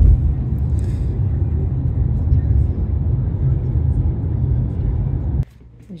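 Car interior noise while driving, heard inside the cabin: a steady low road and engine rumble. It cuts off suddenly about five and a half seconds in.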